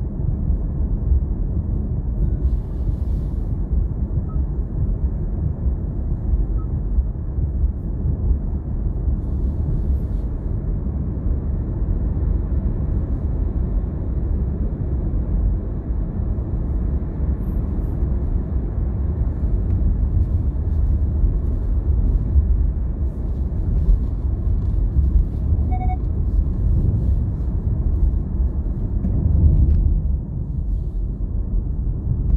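Steady low rumble of a car driving at road speed, tyre and engine noise heard from inside the car.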